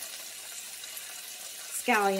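Sliced zucchini sizzling steadily in oil in a frying pan.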